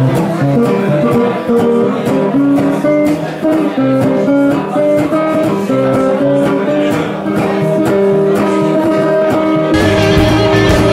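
Resonator guitar playing a blues passage of picked single notes, with no singing. Just before the end the sound fills out with lower notes.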